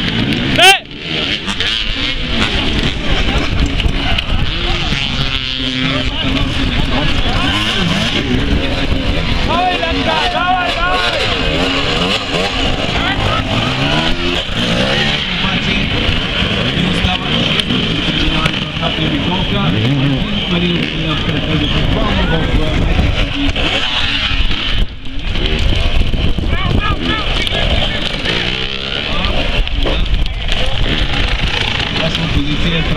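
Enduro dirt-bike engines revving and blipping up and down, loud and continuous, as the bikes are worked over a tyre obstacle. There is a sharp thump under a second in.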